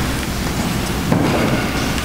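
Steady background noise of a church sanctuary: an even hiss with a low rumble and no clear voices.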